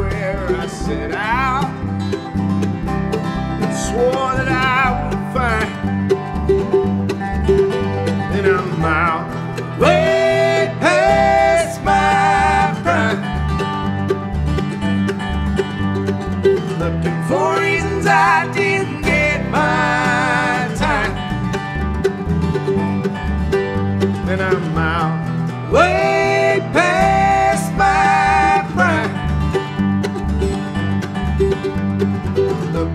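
Bluegrass band playing live: an instrumental passage on mandolin, acoustic guitar and upright bass, with a plucked bass line under wavering, gliding lead runs that come and go.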